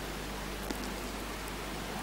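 A pause between sentences of speech: steady low hiss of room tone from the microphone, with a faint low hum underneath.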